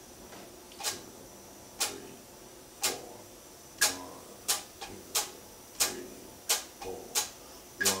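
Electric guitar played as short, muted, percussive strums: four strokes about a second apart, then from about halfway a steady stream of quicker strokes, three to every two seconds, giving quarter-note triplets.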